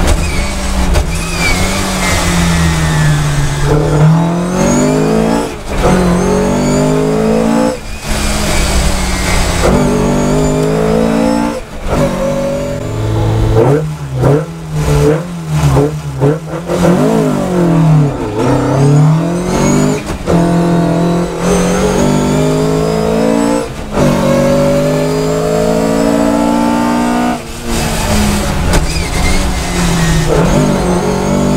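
In-car sound of a 1976 Fiat 131 Abarth Group 4 rally car's mechanically fuel-injected twin-cam four-cylinder engine, driven hard through its dog-box gearbox. The revs climb and drop through repeated quick gear changes as it slows to a crawl around a tight section, with quick rises and falls of revs in the slowest part, then pulls hard up through the gears again.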